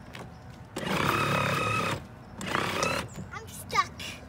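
Electric ride-on toy truck's small motor and gearbox whining as it drives, in two spurts with a short pause between.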